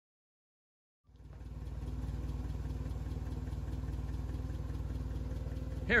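Clark C20 forklift's flathead four-cylinder Continental engine, converted to run on propane, idling steadily. It fades in about a second in, after silence.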